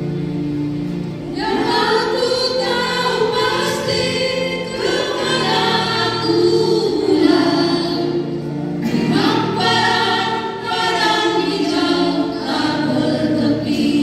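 A group of women singing a church song together into microphones over an instrumental accompaniment. The accompaniment plays alone briefly, and the voices come in about a second and a half in.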